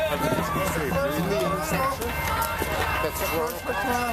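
Voices talking, the words unclear, over a steady low rumble.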